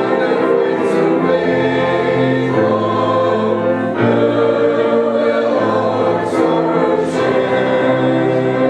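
Church congregation singing a hymn together, a woman's voice leading at the microphone, in slow, long-held notes that change pitch every second or so.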